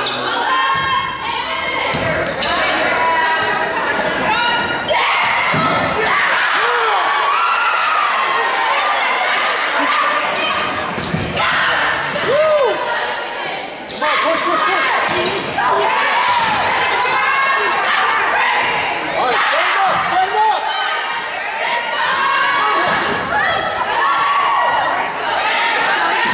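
Indoor volleyball rally: the ball is struck again and again in short sharp hits, against a steady background of players' and spectators' voices echoing in a gymnasium.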